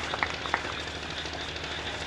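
A few last scattered hand claps in the first half second, then steady background room noise with a faint low hum.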